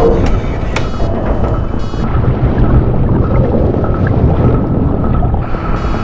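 Film score over a deep, steady underwater rumble from a mini-submarine moving through the water, with a few sharp clicks in the first two seconds.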